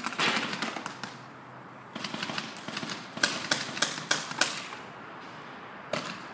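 Paintball markers firing: a quick string of shots at the start, then after a short pause another string, ending in several loud single shots about three a second.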